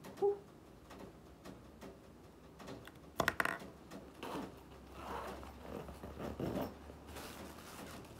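Quiet handling of school supplies and plastic packaging: scattered small clicks and rustles, with one louder short rustling burst about three seconds in.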